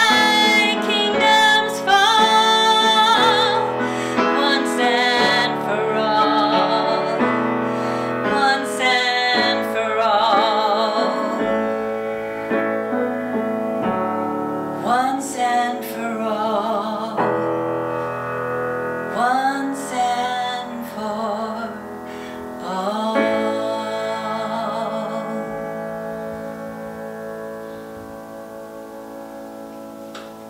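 A woman singing with vibrato to grand piano accompaniment. About three-quarters of the way through, the last phrase begins, and the voice and piano chord hold and slowly fade away as the song ends.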